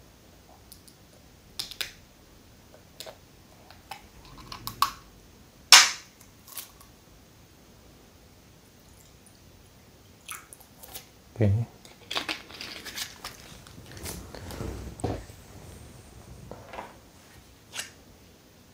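A plastic water bottle being handled, with scattered sharp crackles and clicks, the loudest about six seconds in. Then still water is poured from the bottle into a ceramic mug for a few seconds.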